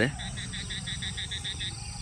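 A frog calling: a rapid, even train of short pulses, about eight a second, lasting about a second and a half and stopping shortly before the end.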